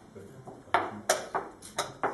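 Rapid sharp clacks of wooden chess pieces being set down on a wooden board and chess clock buttons being pressed during fast blitz play: about five clicks in quick, irregular succession, starting about three quarters of a second in.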